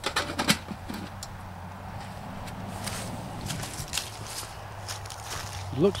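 Stainless steel dome lid set down on a metal camp grill: a quick run of metal clinks in the first half second, then a few faint ticks.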